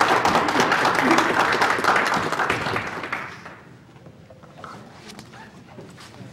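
Audience applauding, dying away about three seconds in.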